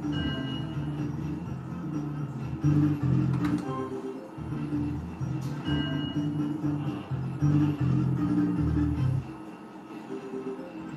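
Novoline Book of Ra Fixed slot machine playing its electronic free-games melody as the reels spin. The tune repeats, with chiming notes over it, and dips briefly near the end.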